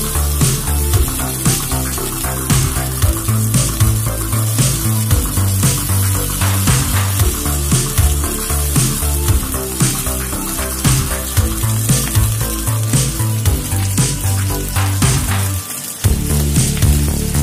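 Fish pieces frying in shallow oil in a pan, a steady sizzle, heard under background music with a regular beat.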